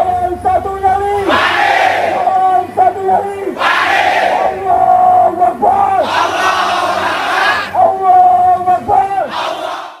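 Football supporters' crowd chanting in call-and-response: long held shouted notes alternate with loud surges of massed shouting roughly every two seconds.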